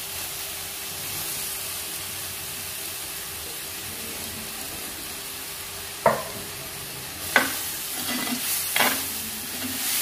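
Onion-chilli paste frying with a steady sizzle in a terracotta pot as boiled potato pieces go in. In the second half a steel ladle starts stirring, clinking sharply against the clay pot three times.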